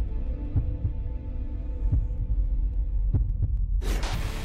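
Logo-intro sound design: a deep low rumble with a few soft thuds, then a sudden loud swell near the end.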